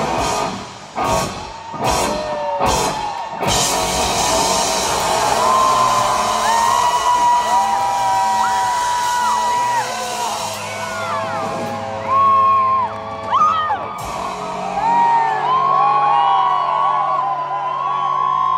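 A live rock band ends a song with a few separate full-band hits in the first seconds. A festival crowd then whoops and cheers, with a low note still ringing from the stage near the end.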